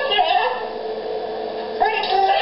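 A drawn-out, voice-like sound with held notes that slide upward in pitch near the start and again near the end.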